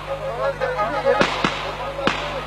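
Two sharp bangs about a quarter second apart, a little past a second in, over a fast, wavering kemençe melody and voices.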